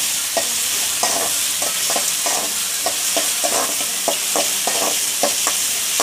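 Sliced garlic, onion and tomato sizzling steadily in hot oil in a metal kadai, while a spoon stirs them with repeated scrapes and taps against the pan, a few each second.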